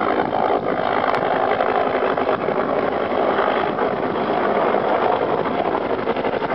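Helicopter rotor and engine noise, a steady fluttering drone with no break.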